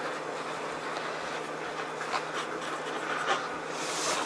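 Steady room hiss with a few faint taps and rustles of handling at the table, a couple of seconds in and again near the end.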